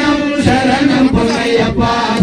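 Ayyappa devotional bhajan: a man sings a chant into a microphone and a group of voices joins in.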